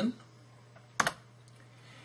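A single sharp computer keystroke about a second in, the key press that confirms a linked cell formula in a spreadsheet, against faint background hiss.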